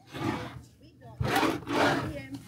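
Wooden cabinet drawers sliding open and shut: a short scrape at the start, then a louder, longer scraping rub in the second half.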